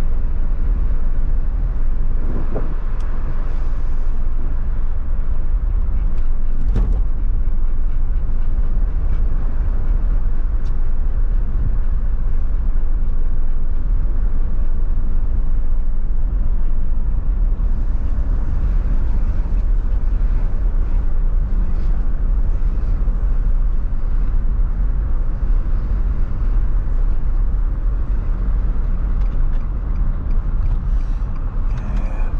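Steady wind and road noise inside a moving car with a window open: a heavy low rumble with wind buffeting, and a few faint clicks.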